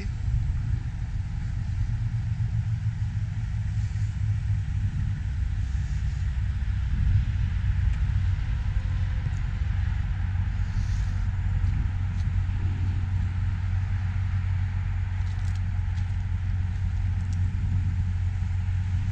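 Toyota Tundra's 5.7-litre V8 idling steadily, a low even rumble.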